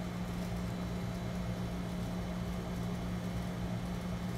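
A steady low hum, like a fan or other running appliance, holding one pitch with no clicks or knocks in it.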